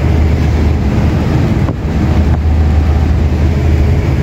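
Heavily loaded heavy truck's diesel engine droning steadily, with road and wind noise, heard from inside the cab.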